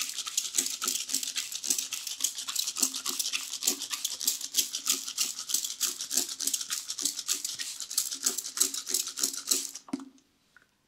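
Hand trigger spray bottle misting onto hair, pumped in quick, steady succession at several sprays a second, each a short hiss. The spraying stops abruptly near the end.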